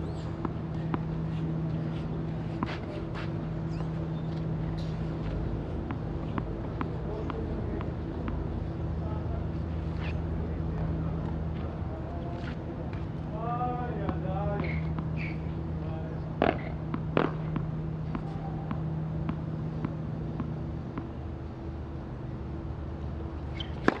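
Tennis court sound between points: a steady low hum throughout, with scattered tennis-ball bounces on the clay, a brief voice around the middle, and two sharper knocks a little later. A serve is struck at the very end.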